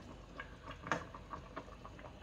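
A stainless pot of chile guajillo sauce with fish boiling on the stove: a scatter of small irregular bubbling pops and ticks over a low hiss, with one sharper tick about a second in.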